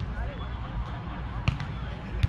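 A volleyball struck by a player's hand: one sharp slap about one and a half seconds in, followed by a couple of fainter taps, over distant voices on the field.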